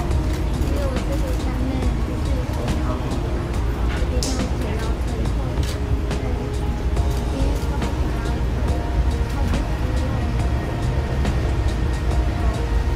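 A woman speaking in a tearful voice, with music underneath, a steady low rumble and scattered clicks.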